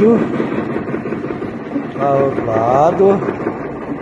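Hydraulic pump unit of a Solum SLM07 pipe bender running with a steady buzzing hum while the bender works. A man's voice breaks in briefly midway.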